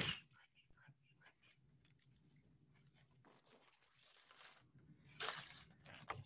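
Near silence, then about five seconds in a brief rustle and crunch of paper cut-outs being handled on a lightbox, with a few smaller rustles after it.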